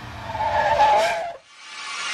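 Tire-squeal sound effect: a car's tires skidding, growing louder and cutting off suddenly about a second and a half in, followed by a rising rushing noise.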